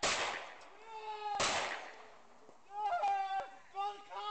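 Two handgun shots about a second and a half apart, each with a long echoing tail, picked up by a security camera's microphone, with people shouting around them.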